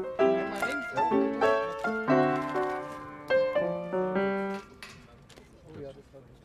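Piano-like keyboard music: a slow melody of single struck notes that ring and fade, stopping about four and a half seconds in.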